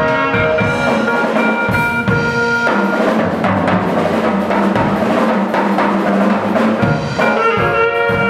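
Live saxophone and electric keyboard playing together over a drum beat, the saxophone holding one long note through the middle.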